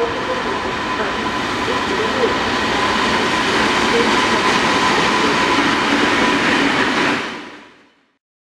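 DB class 232 'Ludmilla' diesel locomotive passing close by with a train of passenger coaches: engine running and wheels clattering over the rails, growing louder to a steady peak midway and fading out near the end.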